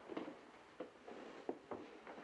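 Faint rustling with a few soft knocks, several in the second half: a man shifting his body and sitting up inside a padded coffin.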